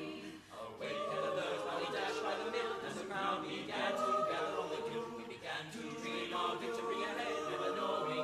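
Mixed men's and women's a cappella group singing in close harmony, with a brief dip about half a second in before all the voices come back in together.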